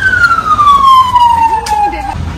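Emergency vehicle siren wailing: one slow sweep that falls steadily in pitch from its peak, then cuts off suddenly near the end.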